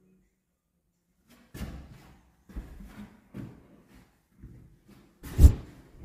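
Soft, irregular knocks of footsteps on a wooden plank floor, about one a second, with a sharper, louder thump near the end.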